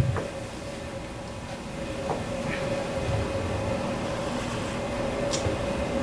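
A steady low rumble of room background noise with a faint constant mid-pitched hum and a few soft clicks.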